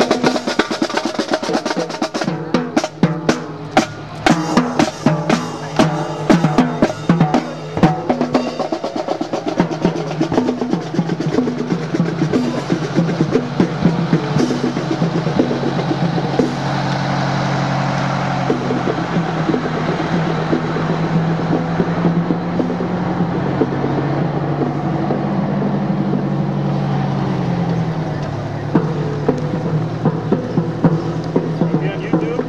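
Marching band drumline playing a cadence on snare and bass drums, with sharp rapid strikes loudest in the first eight seconds or so as it passes. Later a steady low engine hum takes over as a fire truck rolls slowly by.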